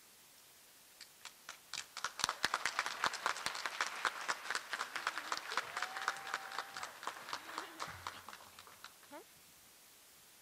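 Applause from a small audience: a few scattered claps at first, filling in about two seconds in, then thinning out and stopping about nine seconds in. Midway through, one person gives a drawn-out whoop.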